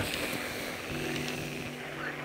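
A steady low hum of several tones, like a distant motor, setting in about a second in over faint outdoor background noise.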